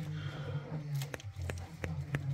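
Steady low hum with a few light clicks in the second half.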